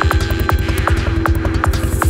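Dark psytrance at 157 bpm: a kick drum on every beat with a rolling bassline between, sharp percussive clicks above, and a steady held drone.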